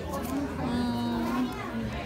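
Indistinct voices talking in the background, one of them drawn out on a single held note around the middle.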